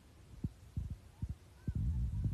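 Low thumps on the microphone, several short ones in the first second and a half, then a steady low rumble near the end: wind or handling noise on the recording phone rather than any sound from the field.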